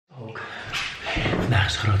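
A man's voice talking in Dutch.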